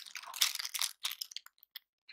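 Thin clear plastic bag crinkling as it is handled, thinning out to a few faint crackles after about a second.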